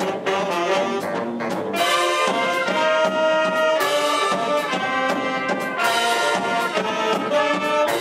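Live jazz big band playing an up-tempo swing number: saxophone, trombone and trumpet sections in full chords over a steady drum beat, with the brass coming in louder about two seconds in.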